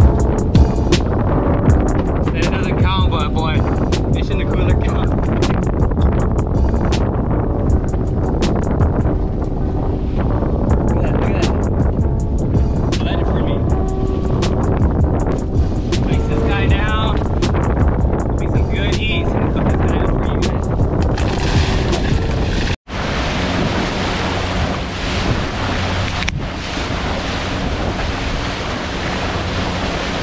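Background music with a steady beat for most of the clip. After a sudden break near the end, wind buffets the microphone and water rushes past a boat under way, over the steady drone of its Yamaha 115 outboard motor.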